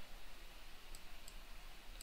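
Two faint computer mouse clicks about a third of a second apart, over low steady room hum.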